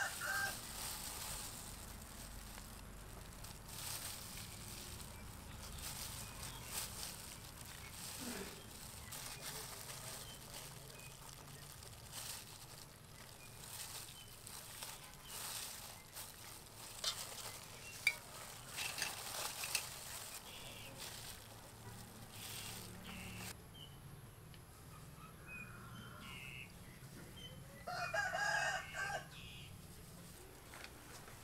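Soft clicks and rustles of gloved hands threading raw shrimp onto bamboo skewers over a metal bowl. A rooster crows in the background near the end, the loudest sound here.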